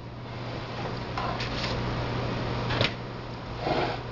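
Handling noises at a kitchen counter as a bottle is fetched, with one sharp click a little under three seconds in, over a steady low hum.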